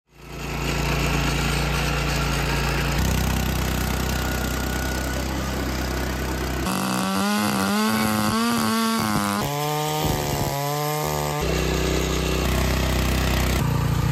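Small petrol power-weeder engines running under load as their tines churn soil, heard in a string of short clips, so the engine note jumps in pitch several times. In the middle the note rises and falls.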